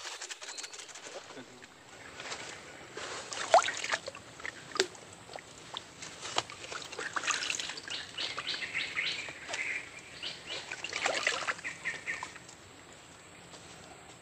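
Fishing tackle being handled as a lure is changed and cast: a run of sharp clicks and rattles, the loudest about three and a half seconds in, then a fishing reel's rattling retrieve in bursts.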